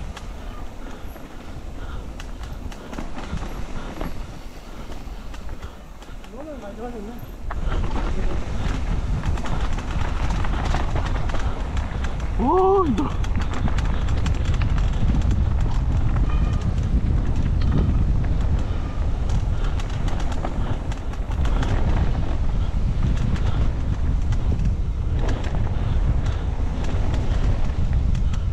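Wind rushing over a camera microphone, with the rattle of a downhill mountain bike rolling fast over a dirt trail. The noise gets much louder about a quarter of the way in as the bike picks up speed. About halfway through there is a brief pitched squeal or cry that rises and falls.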